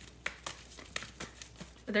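A deck of oracle cards being handled: a quick, irregular run of light clicks and rustles of card stock. A voice starts a word right at the end.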